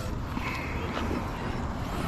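Faint whine of a large-scale brushless electric RC truck's motor, over steady wind noise on the microphone.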